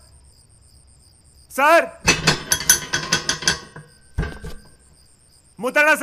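Crickets chirping at night: a faint, steady, high, finely pulsed trill runs throughout. A man's voice cuts in with short bursts of speech from about one and a half seconds in, and again near the end.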